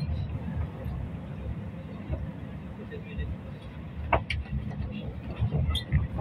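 Road traffic on a wide city boulevard: cars passing with a steady low rumble, and a couple of short sharp clicks about four seconds in and near the end.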